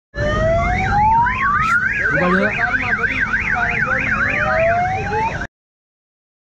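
Electronic toy siren sounds from a kiddie-car carousel ride: a fast warbling siren, about four rises and falls a second, over slower rising wails. It cuts off suddenly near the end.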